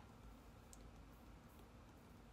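Near silence: room tone, with one faint click about three quarters of a second in.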